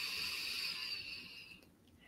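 A woman's slow, deep breath in, a steady airy hiss that fades out about a second and a half in.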